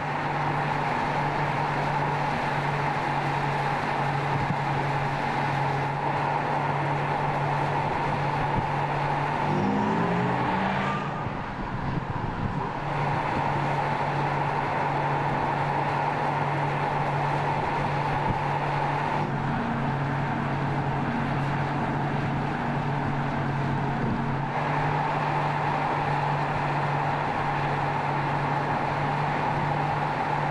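Car driving on a road: steady tyre and road noise with a constant low hum and a steady higher tone. About ten seconds in, a short rising whine, and the noise dips briefly.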